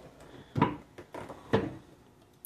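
Manual sublimation heat press being closed and locked: two mechanical knocks about a second apart from its press head and lever, with light handling noise between.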